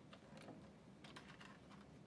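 Faint clicks and rustles of a paper ticket being pulled from a kiosk's ticket dispenser slot, a few light ticks about a quarter second and again about a second in.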